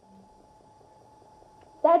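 Near silence: quiet room tone with a faint steady hum during a pause in talk, then a woman starts speaking just before the end.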